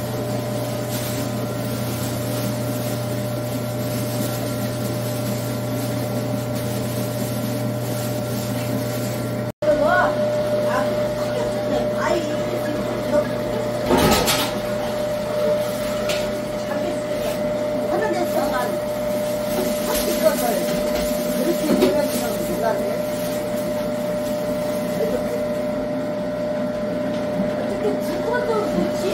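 Electric grinder's motor running with a steady hum as pears, apples and radish are ground through it. The sound cuts out for an instant about ten seconds in, then the motor runs on.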